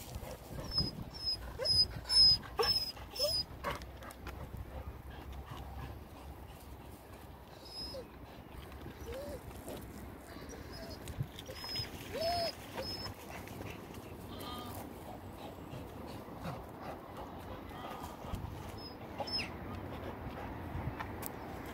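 Animal calls: short calls that each rise and fall quickly in pitch, heard several times, together with runs of thin high chirps at about two a second. The runs come in the first few seconds and again later. The loudest moment is about two seconds in.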